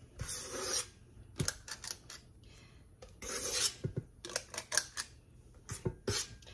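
A metal utensil scraping cake batter around a stainless steel stand-mixer bowl: two short scrapes, one near the start and one about halfway through, with light clicks and taps in between.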